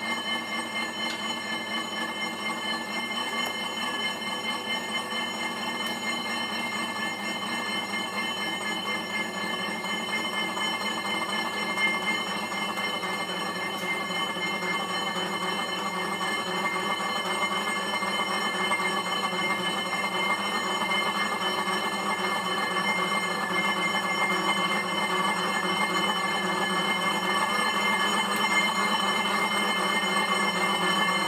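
Stationary exercise bike's flywheel whirring steadily under continuous pedalling, growing gradually louder.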